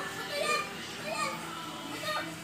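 Children's voices: a few short calls and chatter from kids playing.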